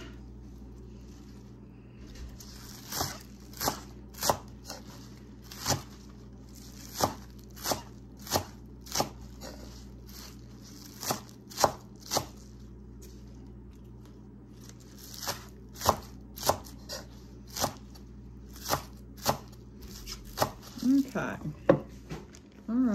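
Large kitchen knife chopping green onion tops on a wooden cutting board: sharp knocks of the blade against the board at an uneven pace, roughly one or two a second, with a short pause midway.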